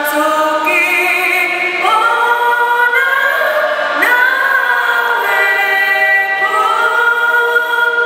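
Several voices singing a slow hymn together, holding long notes that move to a new pitch every second or two.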